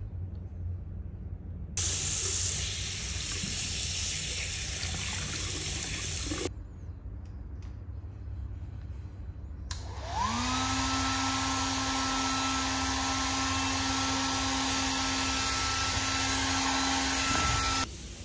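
A washbasin tap runs for about five seconds, rinsing soap lather off hands. Then a handheld hair dryer switches on; its motor whine rises as it spins up, and it blows steadily for about eight seconds before cutting off.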